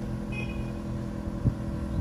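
A 2004 Mazda3's 1.6-litre four-cylinder petrol engine idling steadily and smoothly. There is a soft thump about one and a half seconds in.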